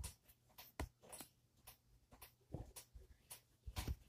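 Faint, irregular rustling and light clicks of a fabric drawing glove being pulled onto a hand, with handling noise close to the microphone.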